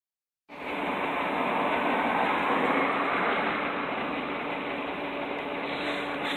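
Cummins N14 inline-six diesel of a Ford 9000 heavy truck running with a steady drone as the truck approaches. The sound cuts in abruptly about half a second in.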